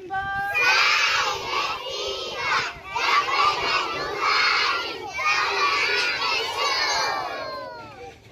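A large group of young children shouting together in three loud stretches, with short breaks between them.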